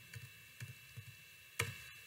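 Faint scattered ticks and clicks, with one sharper click about one and a half seconds in.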